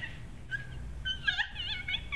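Several short, high-pitched wavering cries or squeaks in the second half.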